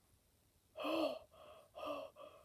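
A person gasping: near silence, then one gasp about a second in, followed by a few shorter, fainter breathy gasps.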